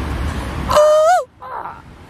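A bird giving one loud, drawn-out call about three-quarters of a second in, held level and then rising and dropping at its end, followed by a fainter, shorter call.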